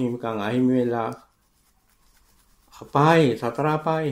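Speech only: a monk preaching a sermon in Sinhala, with a pause of about a second and a half midway.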